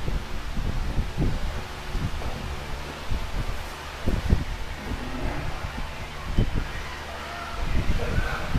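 Scattered low thuds and rustles of a person moving about: footsteps, then sitting and lying back on an incline weight bench, over a steady hiss.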